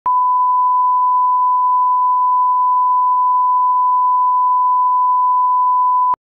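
Steady 1 kHz line-up test tone, a single pure beep held at one pitch, played with broadcast colour bars.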